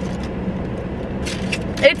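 Steady low hum of a car idling, heard from inside the cabin, with a couple of faint mouth clicks. A woman starts to speak near the end.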